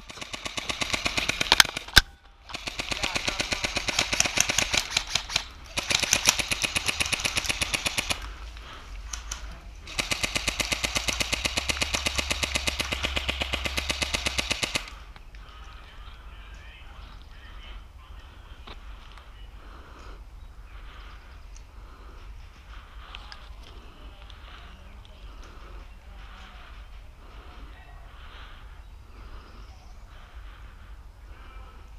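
Airsoft electric rifle (AEG) firing long full-auto bursts, four of them with short breaks in the first fifteen seconds or so. After that only faint, softer sounds are left.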